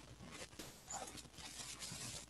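Faint room noise on a computer microphone, with no distinct sound.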